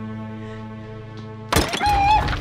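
Low, held, tense background score, cut about one and a half seconds in by a sudden loud dramatic hit with a shrill wavering tone above it: a suspense music sting.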